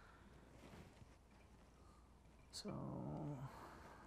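Near silence: faint room tone, then a man's drawn-out, falling "so" about two and a half seconds in.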